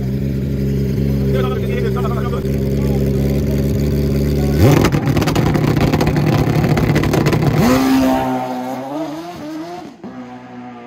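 Drag-racing motorcycle engine held at a steady high idle on the start line, then launching about four and a half seconds in with a sharp rise in pitch and running hard. Its note jumps up again near eight seconds as it shifts, then fades away down the track.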